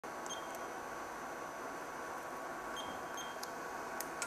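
Three short, high electronic beeps, one just after the start and two close together near the end, with a few faint clicks, over a steady electrical hum.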